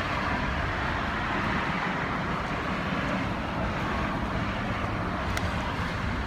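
Steady road traffic noise outdoors, an even, continuous hiss with no single vehicle or event standing out.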